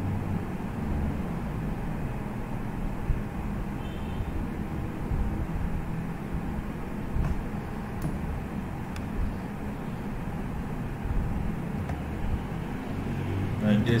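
Steady low background rumble with a few faint clicks.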